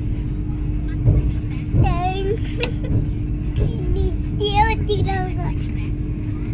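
Steady low rumble and hum of the Vande Bharat Express running very slowly, heard from inside the carriage. A child's high voice calls out twice over it, about two seconds in and again near the five-second mark.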